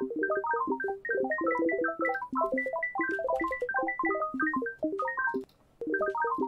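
A dense, fast scatter of short plucked synth notes at random pitches within a chord, the 'twinkling' effect from FL Studio's Sytrus synth set to a pluck envelope, playing uncompressed and saturating the mix. The notes break off briefly near the end and then start again.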